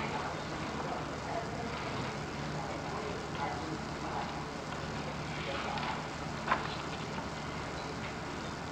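Steady hiss and low hum of an old archival recording of a hearing, with faint, indistinct voices murmuring in the background a few times.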